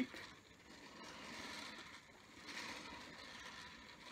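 A potter's rib rubbing against the underside of a clay plate turning on a potter's wheel: a faint, uneven scraping hiss.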